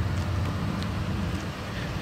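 Steady low rumble of vehicle engine noise under a light even hiss.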